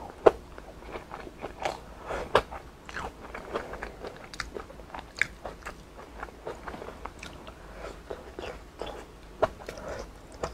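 A person chewing and biting food close to the microphone: a run of short, sharp, irregular mouth clicks, the loudest about a quarter second in and again near two and a half seconds.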